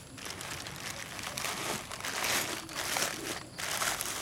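Clear plastic bag crinkling as it is handled and opened by hand, in irregular rustles.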